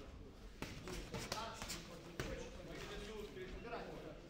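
Boxing gloves landing punches in sparring: sharp thuds about half a second in, two close together just after a second, and another a little after two seconds.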